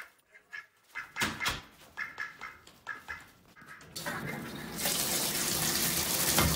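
Pet duck giving several short quacks, then a bathtub faucet turned on about four seconds in, its water running steadily.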